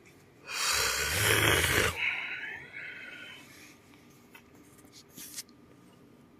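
A man's loud, breathy yawn with a low voiced groan, lasting over a second and trailing off quietly. A few faint clicks follow near the end.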